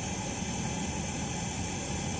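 Steady machine noise of a DTF powder-recycling shaker running, with its top, bottom and vertical auger spirals turning and carrying powder up.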